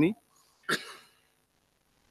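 A man clears his throat once, briefly, about two-thirds of a second in, during a pause in his speech.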